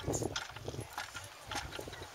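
Horse hooves stepping and shifting, a few irregular knocks.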